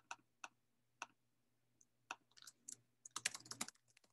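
Faint computer keyboard typing: a few scattered keystrokes, then a quick run of keys a little past three seconds in, as a link is entered into a video-call chat.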